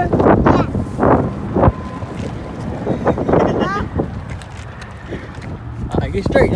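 Wind buffeting the microphone in a steady low rumble, with a few short, high-pitched voice sounds from a young child, one about three and a half seconds in.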